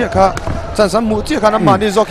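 A man commentating in fast, continuous speech over a boxing bout.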